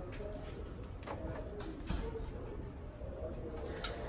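Quiet background noise: a low rumble with a few faint clicks, before any engine sound.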